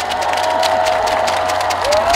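Audience cheering and applauding, with dense clapping and a long high-pitched cheer held over it.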